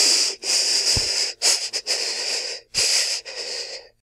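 A person wheezing in a run of four breathy, hissing bursts, each about a second long with short breaks between them, stopping just before the end.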